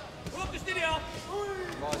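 Dull thuds of kickboxing strikes, a knee and punches on bare skin and gloves, landing several times in quick succession, with voices calling out from ringside.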